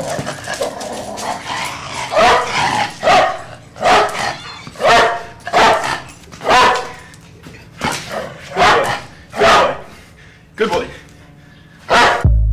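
A dog barks about ten times, roughly once a second, and a voice says 'good boy'.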